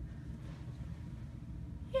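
Steady low background rumble with a faint hiss, with no distinct events.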